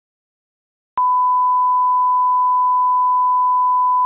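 Broadcast line-up test tone that goes with colour bars: a single steady pure tone, starting abruptly with a click about a second in and holding unchanged at one pitch.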